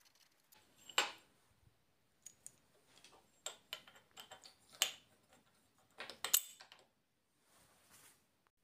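Small metal parts handled and fitted together by hand: a steel plate, bolt and copper braid earth strap giving scattered light clicks and taps, the sharpest about a second in and again near five and six seconds.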